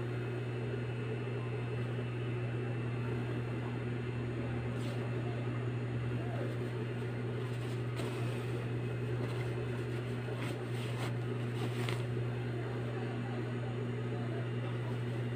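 Steady low electric hum of an industrial overlock sewing machine's motor running idle, not stitching, with brief rustles and clicks of fabric being handled a few times.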